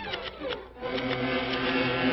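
Cartoon rifle fire as a rapid, rattling run of shots starting about a second in, after a short falling tone near the start.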